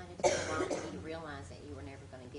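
A person clears their throat about a quarter second in, followed by faint, indistinct speech.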